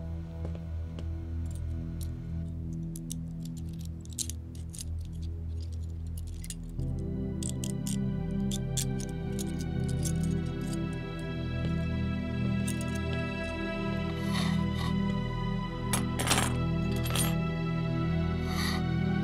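Background score music with sustained notes that grows fuller about seven seconds in, over scattered small metallic clicks and clinks of handcuffs being unlocked and taken off, with a few louder clinks near the end.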